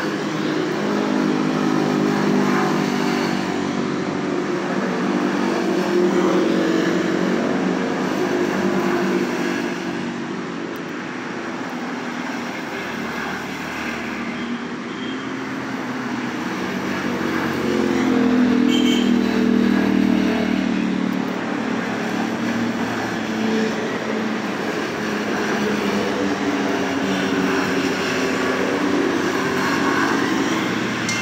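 Engines of side-by-side UTVs passing one after another on a gravel road, each engine note swelling and fading as it goes by. The loudest passes come about six seconds in and again around eighteen to twenty seconds in.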